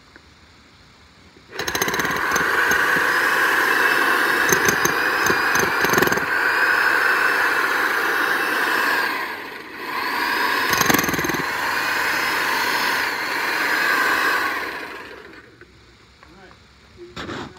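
Corded DeWalt electric jackhammer hammering its chisel bit into soft soil. It starts about a second and a half in, pauses briefly just past the middle, then runs again until shortly before the end.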